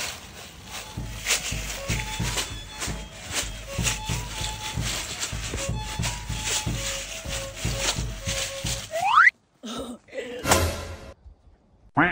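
Music with a steady, even beat and held melody notes, which ends about nine seconds in with a quick rising sweep; after a short gap comes one brief burst of sound, then silence.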